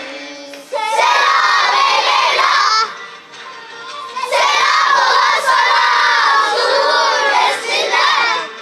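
A children's choir shouting a chant together in unison: two long, loud calls, the first about a second in and the second from about four seconds in.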